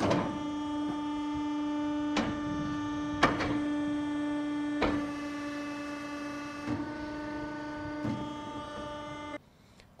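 Electro-hydraulic pump unit driving a field-hospital container's hydraulic legs, running with a steady hum and several sharp clicks as the legs move. It cuts off suddenly shortly before the end.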